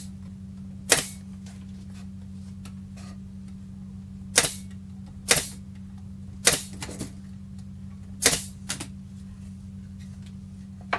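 Pneumatic nailer firing nails into the corner joints of a wooden drawer box: five sharp shots spaced irregularly a second or so apart, with a couple of lighter clicks between them, over a steady low hum.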